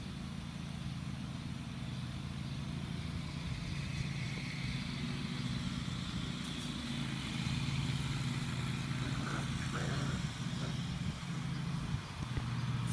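A steady low motor hum, as of an engine or machine running, over a faint outdoor background.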